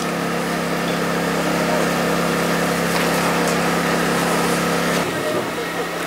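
An engine running steadily at idle, an even hum with an unchanging pitch that stops about five seconds in.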